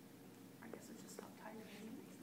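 Quiet, hushed voices murmuring, with a few faint taps.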